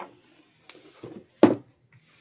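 Hands sliding and pressing a sheet of paper onto a cardboard box, a faint paper rustle, with a sharp knock about one and a half seconds in.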